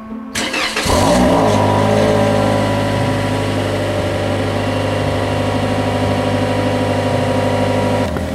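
Toyota Corolla LE's 1.8-litre four-cylinder cold-started, heard at the tailpipe: a brief crank, the engine catching about a second in, then running at a steady fast cold idle.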